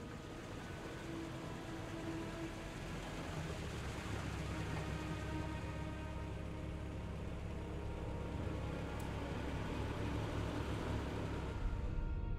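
Dark, sustained film underscore: low droning tones and faint held notes over a steady low rumble, slowly growing louder.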